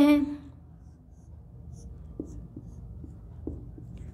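Marker pen drawing on a white writing board: faint scratching strokes with a few light taps.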